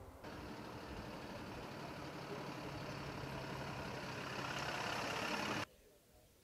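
Diesel engines of MAN trucks driving toward the listener, a steady engine hum with road noise that grows louder as they near. It cuts off suddenly a little before the end.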